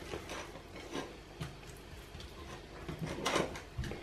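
Hands mixing sliced raw onion into pieces of raw meat on a ceramic plate: faint, irregular handling noise with a few light taps against the plate, a little louder about three seconds in.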